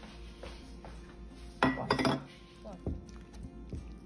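A metal spoon clinking and scraping against the stainless steel inner pot of an Instant Pot while working through cooked dal. The loudest scrape comes about halfway, followed by a few lighter taps.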